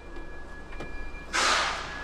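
Pindad Anoa armoured carrier's six-cylinder turbo-diesel engine idling as a steady low hum. A short hiss starts sharply about one and a half seconds in and fades within half a second, the loudest sound here.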